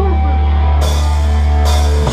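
Live rock band at loud volume: a held low chord from the amplified guitar and bass rings on, with two cymbal crashes, one a little under a second in and one near the end.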